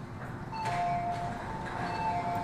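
Two-note electronic chime from Hong Kong MTR platform screen doors as they open. It comes in about half a second in and sounds again near the end, over the steady hum of the station and the train.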